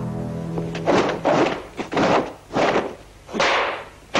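Dubbed martial-arts film sound effects of punches and kicks landing: a quick run of about six sharp hits and swishes. The film's music fades out in the first second.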